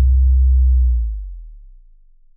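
Deep sustained sub-bass note of a phonk beat ringing out alone and fading away after about a second, as the track ends.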